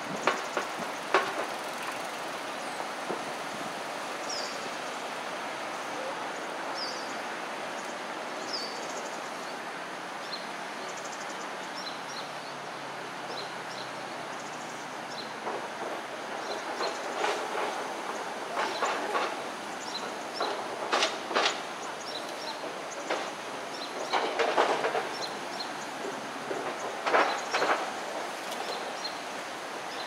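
Steady rush of flowing water, broken by bursts of sharp clicks and splashes from smooth-coated otters working at the water's edge, most of them in the second half. A few short, high, falling chirps sound in the first ten seconds.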